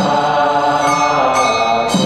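Background music of chanted Buddhist mantra: voices singing long held notes that change pitch about once a second.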